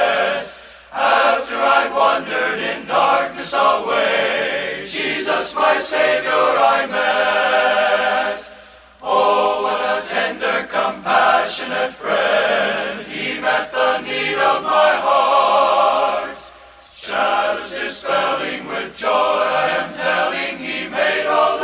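Men's choir singing a gospel hymn in sustained phrases with vibrato, pausing briefly between phrases about a second in, around nine seconds and around seventeen seconds.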